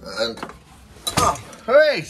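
Clinks and knocks as a phone camera is handled and turned round, with a brief gliding vocal sound from the man near the end.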